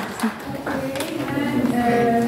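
Indistinct talking in a large hall, with pitched voices coming in about a second in.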